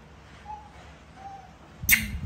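Mostly quiet, with two faint short squeaks, then a sharp slap near the end as a baby macaque's hands land on a tiled kitchen counter.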